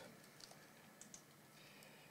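Near silence: room tone with a few faint computer keyboard key clicks.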